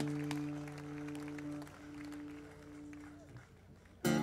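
A held chord from the band's instruments rings steadily and slowly fades away over about three seconds, with a few scattered claps from the audience.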